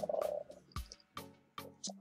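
Computer keyboard keys tapped in a quick, irregular run of clicks as an email address is typed, with a brief low hum near the start.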